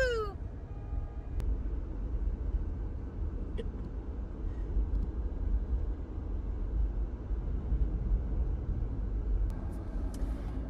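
Steady low road and engine rumble inside a Jeep Wrangler's cabin while driving. A brief wavering, voice-like call comes at the very start, and a few faint clicks are scattered through.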